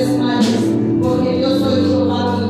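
Live worship band playing, with electric bass and drum kit under singing voices; a cymbal-like crash sounds about half a second in.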